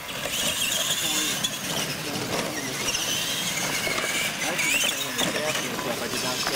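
Electric R/C monster trucks racing on dirt: motors and gearboxes whining, the pitch rising and falling with the throttle.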